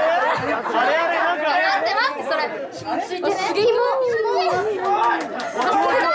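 Several young girls talking and exclaiming over one another through handheld stage microphones in a reverberant hall, with one long drawn-out falling voice about four seconds in.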